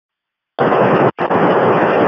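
Loud burst of radio static from a public-safety scanner, a hiss with no voice in it, opening about half a second in after dead silence, with a short break just past a second in.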